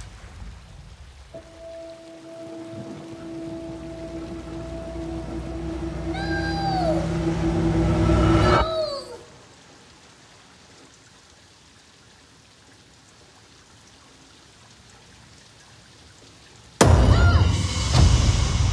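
Rain falling under a horror-film score: a sustained two-note drone swells for several seconds, with two short sliding tones near its end. Then it cuts off abruptly, leaving only a faint hiss. Near the end comes a sudden loud hit.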